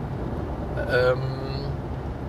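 Steady low rumble of a car driving on a paved road, the engine and tyre noise heard from inside the car, with a brief spoken sound about a second in.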